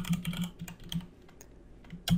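Computer keyboard typing: a quick run of keystrokes in the first second, then only a few scattered taps.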